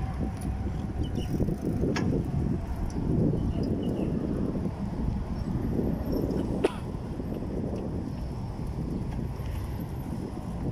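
Bicycle being ridden over a paving-block path: a steady low rumble of tyres and wind on the microphone, with two sharp clicks, one about 2 seconds in and one near 7 seconds.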